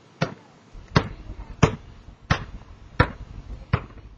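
A basketball dribbled on a concrete patio: six bounces at a steady pace, about one every 0.7 seconds.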